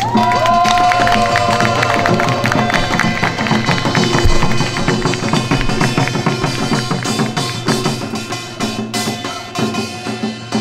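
Seated samulnori percussion ensemble playing a fast, dense rhythm: janggu hourglass drum and buk barrel drum struck under the bright metallic clatter of the kkwaenggwari small gong. A long ringing metallic tone sounds at the start and fades over the first few seconds.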